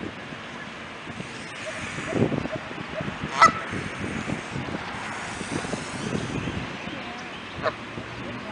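Canada goose honking: one loud, sharp honk about three and a half seconds in and a shorter one near the end, over a steady background hiss.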